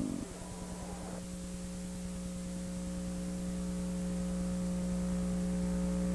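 Steady electrical mains hum on the recording: several constant tones that grow slowly louder.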